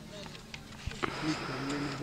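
Indistinct voices talking quietly. About a second in there is a sharp click, followed by a hissing noise.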